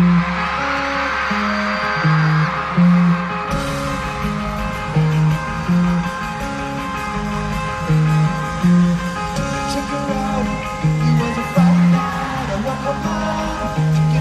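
Live punk rock: an electric guitar plays a short repeating riff alone, and about three and a half seconds in the full band comes in under it with drums and bass.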